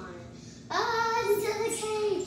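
A child's voice singing a held, wordless note, starting about two-thirds of a second in and lasting about a second and a half.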